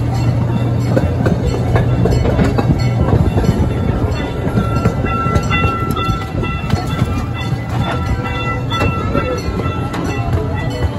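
Amusement-park ride train running along its track: a steady low rumble with repeated wheel clicks. A thin steady high tone joins about halfway through.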